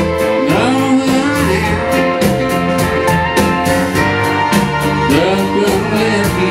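Live music: a man singing while playing a grand piano, with a steady beat of sharp percussive strokes behind him.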